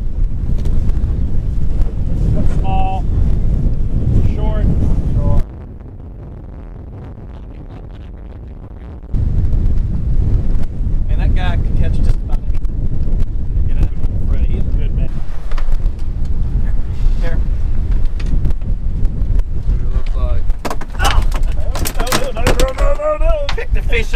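Strong wind buffeting the camera's microphone in a loud, steady low rumble, which cuts out abruptly about five seconds in and comes back just as suddenly some four seconds later.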